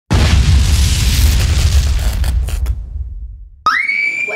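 A plastic bottle of dry ice bursting from gas pressure: a sudden loud bang just after the start, followed by a rushing noise that fades away over about two and a half seconds.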